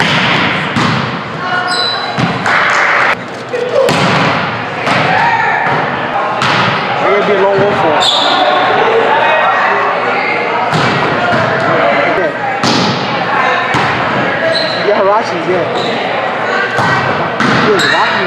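A volleyball rally on a hardwood gym floor: the ball is struck again and again, with a jump spike at the start and the ball hitting the floor, each hit echoing in the hall. Players call out indistinctly throughout.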